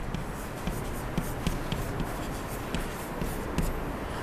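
Chalk writing on a blackboard: a quick, irregular run of short scratches and taps as a word is written out, over a steady background hiss.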